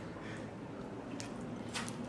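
Faint gulping and liquid sloshing as several people chug drink from plastic bottles, with a few soft clicks in the second half.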